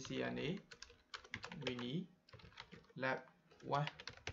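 Typing on a computer keyboard: short, quick runs of keystrokes as a command is keyed in.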